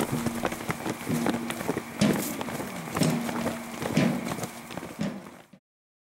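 A column of people walking through long grass: irregular footfalls, with small clicks and rattles from the gear they carry. The sound cuts off suddenly to silence about five and a half seconds in.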